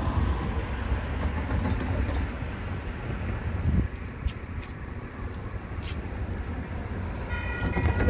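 Low, steady rumble of a VIA Rail P42DC diesel passenger locomotive and its train near a level crossing. A few faint clicks are heard, and a steady warning sound made of several high tones starts near the end.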